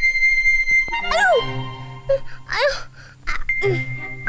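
A cartoon child's wailing cries of pain as an injection needle goes in, several short cries that rise and fall in pitch, over background music that opens with a held high note.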